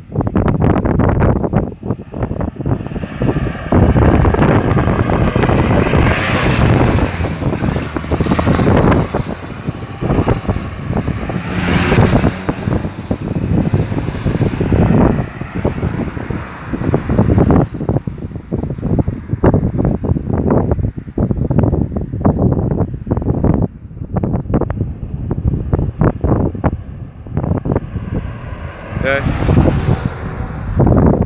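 Wind buffeting the microphone, with cars driving by at the road junction; the traffic noise swells about six seconds in and again around twelve seconds.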